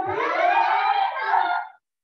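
A class of martial arts students shouting together in one long group kiai. It lasts about a second and a half and cuts off sharply near the end.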